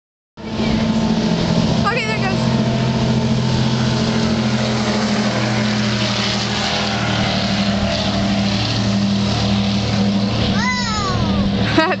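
Baja performance powerboat's engines running at high speed as it makes a fast pass, a loud steady drone.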